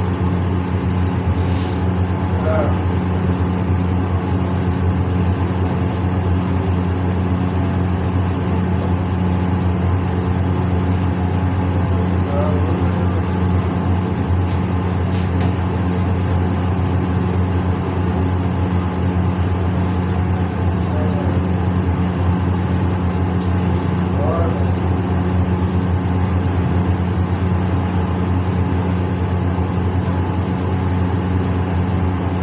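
A steady low machine hum at an even pitch, with faint voices now and then behind it.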